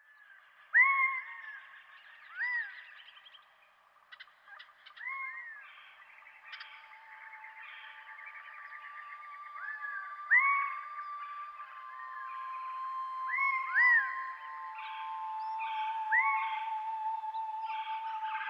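Nature recording of repeated short animal calls, each arching up and down in pitch, every second or two with echo. From about six seconds in, a sustained ambient synthesizer tone rises beneath them.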